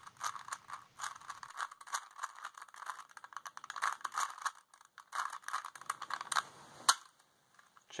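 A plastic 3x3 Rubik's Cube being twisted quickly, its layers clicking in rapid, irregular succession: the last turns of the solve. The clicking stops after a final sharper click near the end.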